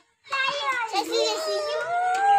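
Children's voices talking and calling out, starting about a third of a second in, with one long drawn-out call near the middle.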